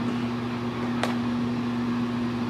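A steady low hum, with one light click about a second in.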